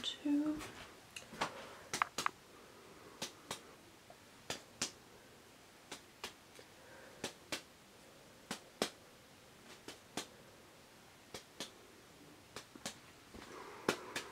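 Close-miked fingertip tapping, in sharp single taps and pairs about a second apart: mock chest percussion tapped on the back, as in a lung examination.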